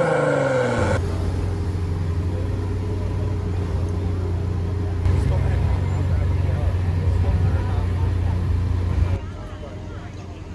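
McLaren Senna's twin-turbo V8 idling with a steady low drone, a little louder from about five seconds in, after a short falling tone in the first second. The drone drops away about nine seconds in, leaving quieter street sound.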